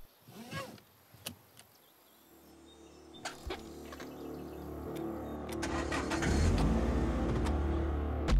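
Sounds inside a car: a few sharp clicks, then a car engine running with a steady hum that grows louder over several seconds.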